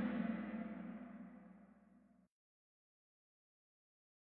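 Kahoot game's gong sound effect for the end of a question, ringing and fading away, then cut off suddenly a little over two seconds in.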